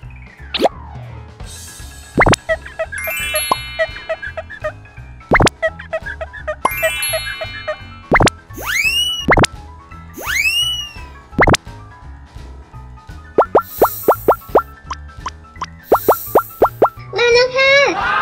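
Light children's background music with a string of cartoon sound effects laid over it: quick rising chime runs, springy boings and a fast run of pops near the end.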